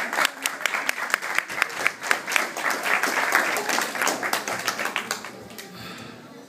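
A crowd of guests applauding, many overlapping hand claps that thin out and fade over the last second or so.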